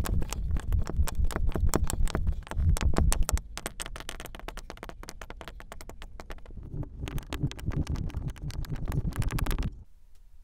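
Kinetic sand in a clear box being pressed down with a flat block, giving a dense, fast crackle of tiny crunches. The crackle is loudest for the first three seconds or so, eases off, comes back strongly and cuts off abruptly just before the end.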